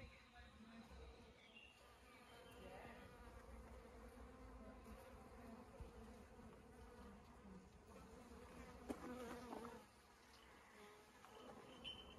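Faint, steady buzzing of bees flying among flowering plants, briefly louder about nine seconds in.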